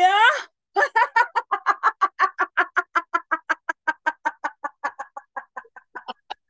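A woman's rhythmic "ha-ha-ha" laughter, short even pulses about five or six a second that fade as the breath runs out: a laughter-yoga exercise of laughing out the whole exhale after a deep belly breath. It opens with a brief drawn-out rising vowel.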